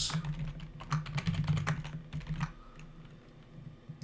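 Typing on a computer keyboard: a quick run of keystrokes for the first two and a half seconds, then a few quieter, sparser taps.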